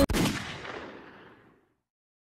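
An edited sound-effect hit cuts in over the ended argument and fades out over about a second in a long reverberant tail, leaving dead silence.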